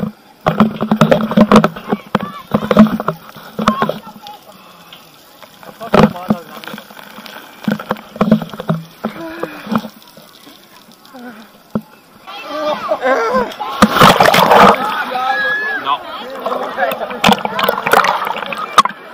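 Voices calling out over rushing and splashing water; the water noise thickens about two-thirds of the way through as a rider goes down a water slide into the pool.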